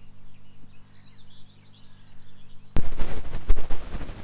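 Birds chirping faintly, then from nearly three seconds in, loud wind buffeting the microphone with gusty low thumps.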